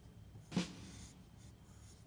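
Faint scratching of a pencil drawing on construction paper as a traced claw outline is corrected, with one brief louder sound about half a second in.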